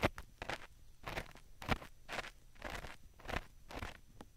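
Ear pick scraping against the silicone ears of a 3Dio binaural microphone, in irregular scratchy strokes about two a second.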